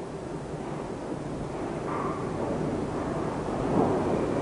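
Steady rumbling background noise and hiss with no distinct events.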